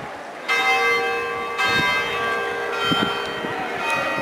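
A large bell tolling, struck about once a second. Each strike rings on with several steady tones that sustain into the next strike.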